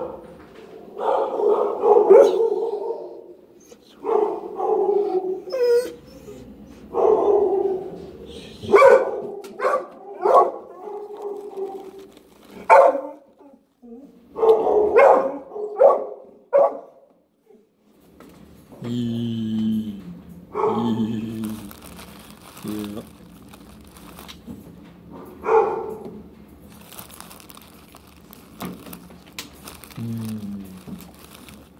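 A blue pit bull-type dog vocalizing in a long run of short woofs, whines and grumbles, one after another, for about the first seventeen seconds, then a few lower, quieter sounds.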